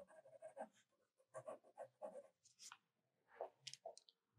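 Faint HB graphite pencil strokes on drawing paper: quick short hatching strokes at about five a second for the first second, then scattered strokes, with a few sharper clicks near the end.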